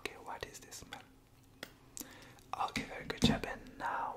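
A man whispering, with a few short sharp clicks among the words.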